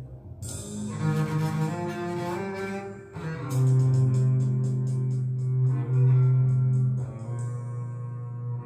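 Recorded music played back through a small homemade two-way speaker (a 10 cm Kenwood full-range driver with a super tweeter): low bowed strings holding long deep notes. A run of quick high ticks enters about three and a half seconds in as the music gets louder.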